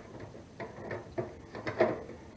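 The propane-cylinder door of a Heat Hog portable propane heater being worked by hand, giving a few separate clicks and knocks, loudest near the end. The door is stiff and hard to open or close.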